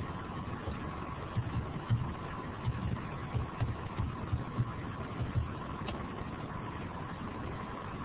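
Steady hiss of an open microphone line with a faint steady whine, while the connection is dropped. A few soft low bumps come in the first half.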